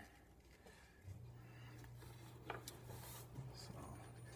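Near silence: room tone with a faint steady low hum that starts about a second in.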